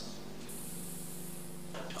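Faint hiss in a pause between words, with a brighter high hiss from about half a second in until shortly before the end, over a faint steady low hum.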